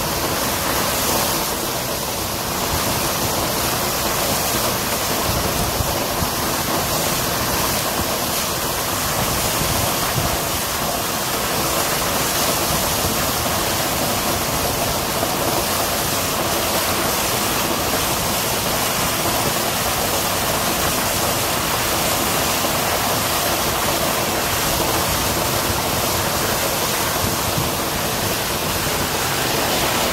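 Water gushing steadily from the open end of a rooftop water tower's drain pipe and splashing onto the flooded gravel roof as the tank drains.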